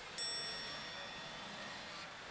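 A bright, bell-like chime from a pachinko machine sounds suddenly just after the start, made of a few high tones that ring on and slowly fade. It comes during the machine's symbol-flow reach sequence, over steady background noise.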